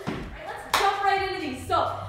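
A woman speaking, cueing an exercise, with a short thud at the very start, most likely a foot landing from a jump.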